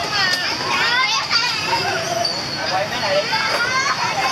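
Several young children's voices overlapping: high-pitched shouts, squeals and chatter of children at play, continuing without pause.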